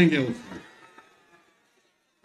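A man's amplified speech ends about half a second in, its echo fading out over the next second, followed by silence.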